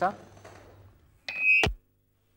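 A telephone call being put through: a short loud burst with a steady high beep, ending in a sharp click, then a moment of dead silence on the line.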